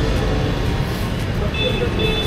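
Steady low rumble of street traffic, with a brief high tone near the end.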